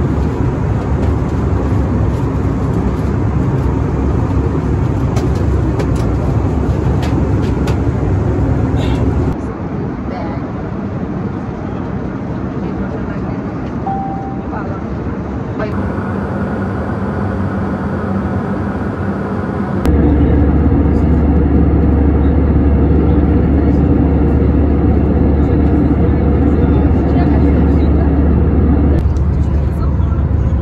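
Steady airliner cabin noise in flight, a continuous rumble from the engines and air system, with indistinct voices. It changes abruptly about 9 seconds in and again near 20 seconds, after which it is louder and deeper.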